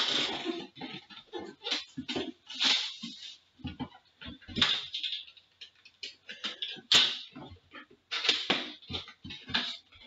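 Cardboard Upper Deck Premier hockey box being cut open and handled: an irregular run of short scrapes, taps and rustles as the seal is slit and the wrapped tin is pulled out.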